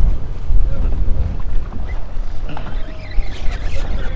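Wind buffeting the camera's microphone, a loud, uneven low rumble, with faint distant voices about two and a half seconds in.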